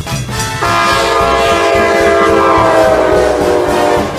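Locomotive multi-chime air horn on an ACE commuter train, sounded as the train comes through a grade crossing: a loud chord of several notes held steadily, dropping slightly in pitch as it passes. It starts about half a second in and cuts off abruptly.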